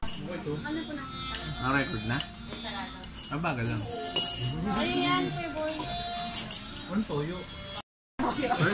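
Indistinct voices over background music, with a few short clinks of spoons against bowls. The sound cuts out briefly near the end.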